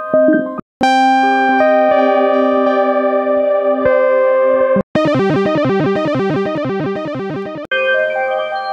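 Analog synthesizer phrase samples, played through effects pedals, auditioned one after another, each cut off abruptly when the next begins. First comes a held chord of sustained notes lasting about four seconds. Then a fast, repeating, stuttering run of notes lasts about three seconds. Another phrase starts just before the end.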